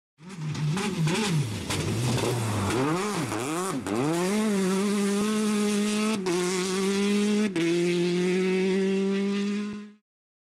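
Racing car engine blipping the throttle several times, then revving up and holding high revs, with two short breaks in the pitch. The sound fades in at the start and fades out at the end.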